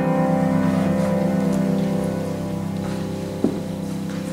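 A held piano chord ringing on and slowly fading at the end of a piece, with a single short knock about three and a half seconds in.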